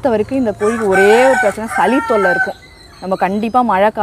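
A Kadaknath rooster crowing once, a long drawn-out call of about a second and a half starting about a second in, over a woman's talking.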